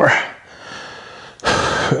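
A man's breathing while doing a crunch: a faint breath, then a short, loud exhale about a second and a half in.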